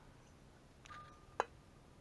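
One sharp light click a little past halfway, just after a faint brief squeak-like tone, against quiet room tone.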